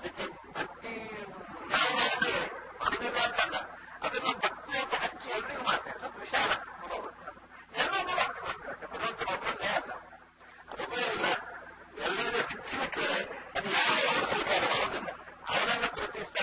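Speech only: a man talking continuously in a discourse, with short pauses between phrases.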